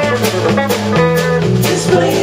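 Live rock band playing an instrumental passage: electric guitars and electric bass over a drum kit keeping a steady beat, the bass moving in stepped notes.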